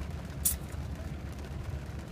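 Steady low hum inside a parked car's cabin, with one brief faint click about half a second in.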